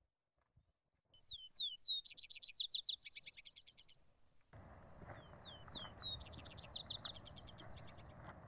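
A songbird singing twice: each song is a few quick down-slurred whistles speeding into a fast high trill. From about halfway, a steady low rushing noise runs under the song.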